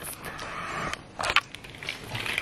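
Wrapped candy bars rustling and knocking as they are handled over a plastic bucket, with two short, sharper clicks a little past halfway.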